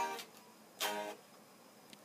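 Telecaster-style electric guitar strumming an A-flat major chord twice, once at the start and again just under a second in, each strum ringing and fading. It is the closing chord of the progression, resolving it in a cadence.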